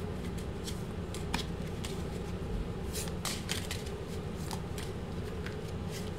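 A deck of tarot cards being shuffled by hand: irregular soft snaps and slaps of card against card, a few a second, over a steady low hum.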